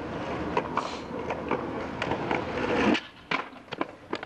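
Skateboard wheels rolling on rough asphalt, growing louder, then cutting off suddenly about three seconds in. Several sharp clacks follow as the board leaves him and hits the pavement in a bail.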